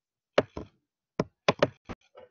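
About six short, sharp taps or clicks at uneven intervals, the first and a pair about one and a half seconds in the loudest.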